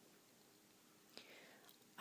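Near silence: quiet room tone in a pause between soft-spoken phrases, with one faint click about a second in.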